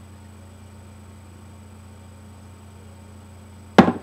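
Steady low electrical mains hum. Near the end comes one sharp knock as the plastic oil bottle is set down by the frying pan.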